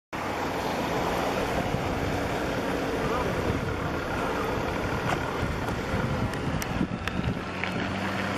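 Wind buffeting the microphone and water washing around a bass boat on open water, a steady rushing noise. A faint low steady hum grows plainer near the end.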